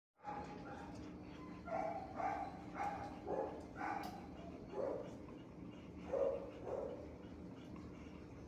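A dog barking in short single barks, about eight in all, starting a second and a half in, over a steady background hum in a shelter kennel.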